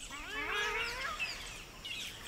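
A bird's call, one long note rising in pitch over about a second, with small birds chirping high in the background.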